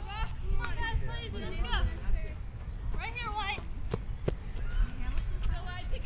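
High-pitched shouts and calls from soccer players and spectators across the field, in bursts during the first two seconds and again about three seconds in, with a few sharp knocks and a steady low rumble underneath.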